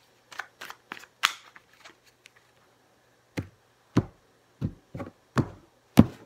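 A tarot deck shuffled by hand: about a dozen short separate swishes and slaps of cards, with a pause of about a second in the middle and a louder sharp knock at the very end.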